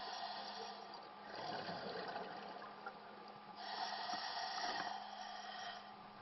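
A scuba diver breathing underwater through a regulator: two exhalations about two seconds apart, each a rush of bubbles, over a steady faint hum.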